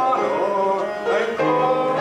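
A congregation singing a hymn, accompanied on the piano.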